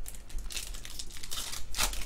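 Foil wrapper of a trading-card pack crinkling in the hands as it is picked up and torn open, in a rapid, irregular run of crackles.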